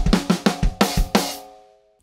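DW drum kit played with drumsticks: a fast run of strokes that stops about a second in, the last hit ringing on and fading away.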